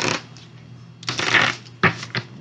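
A tarot deck being shuffled: short papery riffles, the longest and loudest about a second in, then a sharp card snap near the end.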